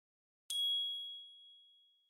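A single bright ding of the KOCOWA logo sting: one high chime struck about half a second in, ringing out and fading away.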